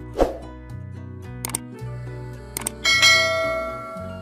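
Subscribe-button animation sound effects over soft background music: a quick swoosh just after the start, two sharp clicks, then a bell ding about three seconds in that rings out.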